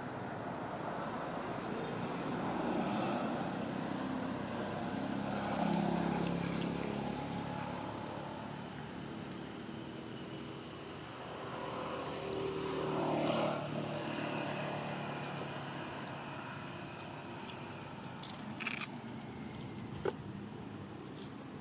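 Outdoor ambience with motor vehicles passing, their engine sound swelling and fading twice, and a few light clicks near the end.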